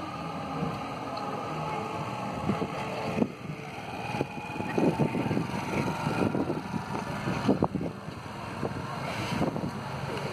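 Small street motorcycle's engine running close by, then pulling away; the sound is loudest and roughest in the middle.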